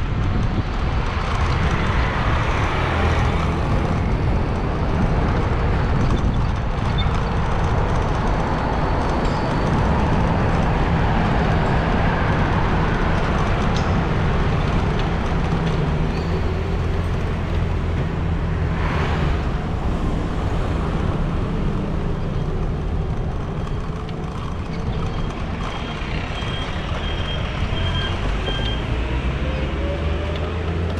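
Steady wind rush over the microphone and road and traffic noise while riding an e-bike along a city street, with vehicles passing close by. There is a short louder swish about two-thirds of the way through and a faint run of high beeps near the end.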